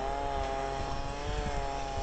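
An engine running steadily at a constant pitch.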